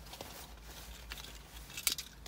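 Faint rustling and small handling clicks inside a car, with one sharp click near the end.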